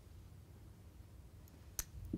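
Quiet room tone with a low hum, broken near the end by one sharp lip smack as the mouth opens to speak.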